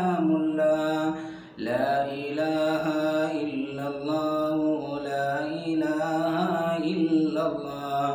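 A man's solo unaccompanied voice chanting an Islamic devotional chant in long, drawn-out notes that waver in pitch, with a short breath pause about a second and a half in.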